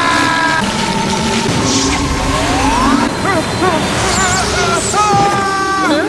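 Anime fight soundtrack: a loud, rumbling crush of sand under dramatic music, with a voice crying out in wavering, rising and falling cries.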